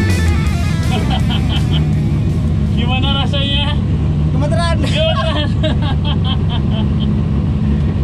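Drift car engine running steadily, with a person's voice exclaiming twice near the middle and music in the background.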